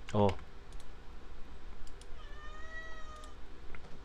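A faint, high-pitched drawn-out call lasting about a second, near the middle, with a few soft clicks around it.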